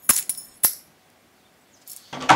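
Two sharp metallic clicks about half a second apart, the first with a brief bright ring.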